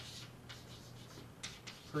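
Chalk writing on a blackboard: faint scratching, with a few short, sharp chalk strokes about one and a half seconds in.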